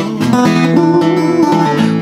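Acoustic guitar strummed, accompanying a country-gospel song.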